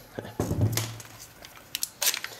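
Plastic handling noise and a few sharp clicks near the end as a Bosch li-ion power-tool battery is slid out of a plastic battery adapter base.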